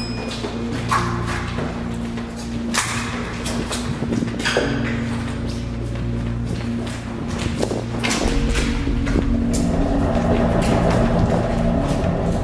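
Background music of sustained low notes, with a few sharp hits spread through it and a slight swell in the second half.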